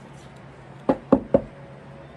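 Three quick knocks by hand, about a quarter second apart.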